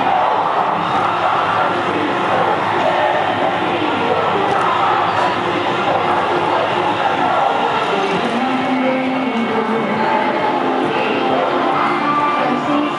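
Recorded dance music with singing, playing steadily under crowd chatter and cheering.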